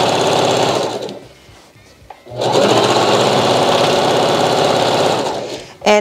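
Singer Heavy Duty domestic sewing machine running at speed, sewing a straight stitch through satin fabric. It stops about a second in, stays quiet for a little over a second, then starts again and runs until near the end.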